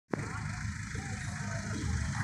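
Steady low rumble of a river passenger motor boat's engine running under way, with faint voices over it.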